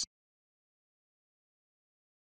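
Complete silence: the soundtrack is blank, with no cooking sounds, after a narrated word cuts off at the very start.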